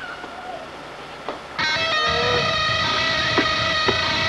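Soundtrack music: an electric guitar cuts in suddenly about a second and a half in, holding a steady ringing chord.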